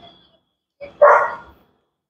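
A dog barks once, a short loud bark about a second in.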